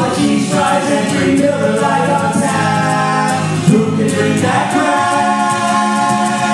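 Two male voices singing long held notes in harmony, backed by an acoustic guitar, in a live performance.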